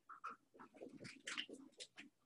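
Dry-erase marker squeaking and scratching on a whiteboard while writing: a faint run of short strokes.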